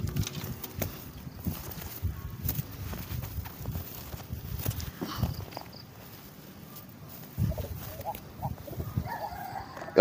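Quiet outdoor background with faint chicken clucking now and then.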